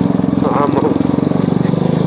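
Royal Enfield Classic motorcycle's single-cylinder four-stroke engine running under way at low speed, a steady, even run of rapid firing pulses.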